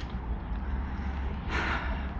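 Outdoor ambience with a steady low rumble of wind on the phone's microphone, and a short breath drawn in about one and a half seconds in, just before speech resumes.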